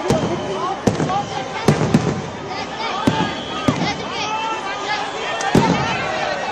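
Aerial fireworks going off: about seven sharp bangs at irregular intervals as shells and rockets burst overhead.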